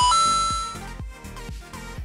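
A bright two-note chime sound effect, the second note higher and held for under a second as it fades, over background music with a steady beat.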